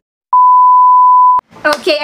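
A single loud, steady test-tone beep, the reference tone that goes with colour bars. It lasts about a second and cuts off abruptly.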